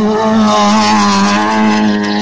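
Rally car's engine held at high revs as the car drives past and away, its note staying steady and loud, with a broad hiss over it.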